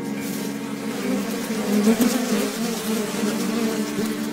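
Flies buzzing, a wavering drone that swells and fades, with faint crackles and a soft background music bed.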